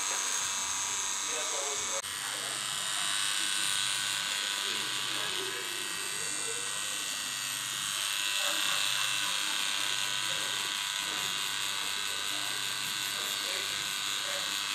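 Pen-style tattoo machine buzzing steadily as its needle works ink into skin.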